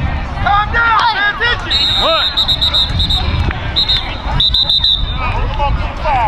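Voices of players and spectators calling out and chattering on a sports field. From about two seconds in, a high-pitched tone sounds in a string of short blasts for about three seconds.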